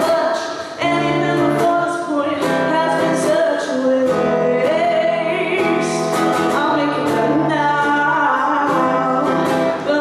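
A woman singing a slow song, accompanied by her own strummed ukulele, with a brief drop in the music about half a second in.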